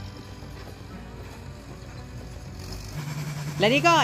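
Low engine rumble of an old farm tractor dragging a leveling drum over the dirt pulling track. About three seconds in, a louder, steady engine drone of a pulling tractor under load takes over.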